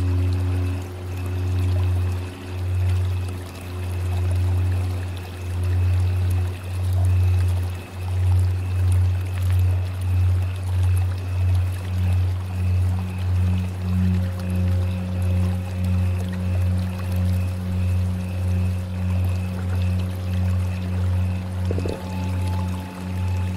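Tibetan singing bowls ringing in a layered drone. The deep tone swells and fades in slow waves that quicken to about one a second partway through, with higher ringing overtones above it. A new, higher bowl tone comes in about two-thirds of the way through.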